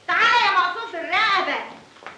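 A child's high-pitched voice in two drawn-out, wavering vocal phrases, the second shorter and fading away.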